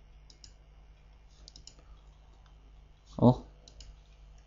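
Faint scattered clicks of a computer mouse and keyboard, with a small run of clicks about a second and a half in. A short voiced sound from the presenter comes just after three seconds.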